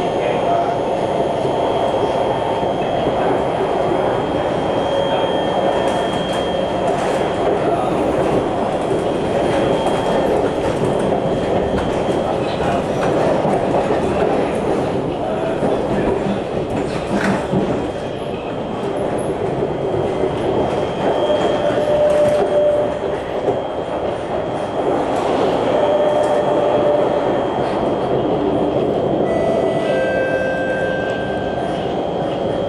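Kawasaki C151 metro train running between stations, a steady rumble of wheels on rail with scattered clicks. A thin steady high whine comes from its Mitsubishi Electric GTO chopper traction equipment, with a lower tone rising out of it twice in the second half.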